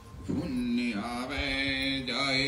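Devotional aarti chant: a male voice holding long, slowly shifting notes over a steady accompaniment, coming in about a quarter second in after a brief lull.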